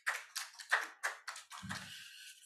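Light, scattered applause from a small audience: a few people clapping irregularly and faintly, with a low rumble joining near the end.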